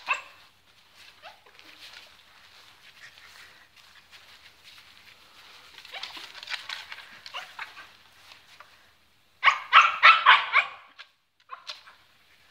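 Husky puppy yipping excitedly at a barn hunt rat tube, a quick run of about five high yips late on and one more just after, with softer rustling in the straw before that.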